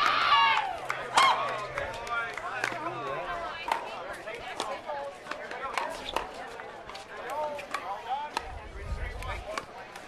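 Pickleball paddles striking the hard plastic ball during a rally: sharp pops at irregular intervals. Voices talk throughout, loudest in the first second or so.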